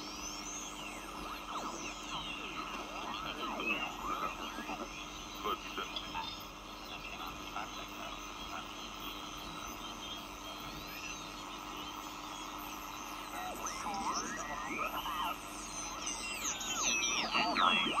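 Homebuilt two-transistor 'Sputnik' regenerative receiver being tuned across the 40-metre amateur band: steady band hiss with whistles and garbled sideband voices sliding up and down in pitch as stations are tuned through. Near the end a station comes in louder.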